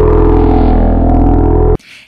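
Loud transition sting for a TV programme's logo: a held, deep synthesized chord with several steady tones stacked together, cutting off suddenly near the end. A voice starts just as it stops.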